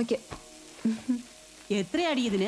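Faint sizzling of food frying, under brief snatches of speech and a couple of light clicks.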